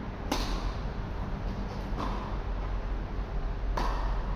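Tennis balls struck by rackets: a sharp serve hit about a third of a second in, a fainter hit about two seconds in, and another sharp hit near the end as the server volleys at the net. A steady low hum runs underneath.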